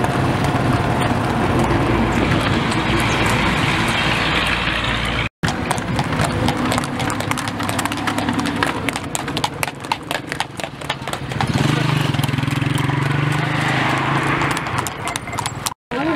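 Horses' hooves clip-clopping fast on an asphalt road as horse-drawn tangas race, over a steady low hum of motor vehicles running alongside. The sound cuts out briefly twice.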